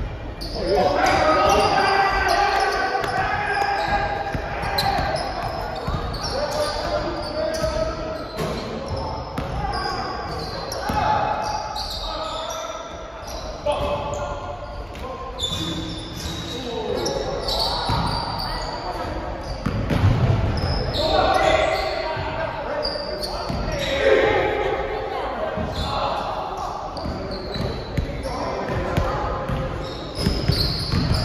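Basketball bouncing on a hardwood gym floor during play, with players' voices and calls echoing through a large gym hall.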